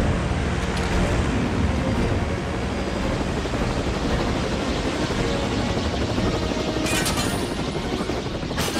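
Action-film sound mix of a speeding open car and the heavy, steady drone of large aircraft engines, with a short burst of sharp noise about seven seconds in.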